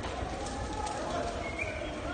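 Distant shouting voices from the street over a steady low rumble.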